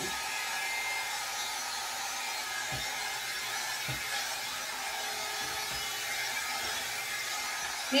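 Hot air brush running steadily: an even fan whir with a faint high motor whine.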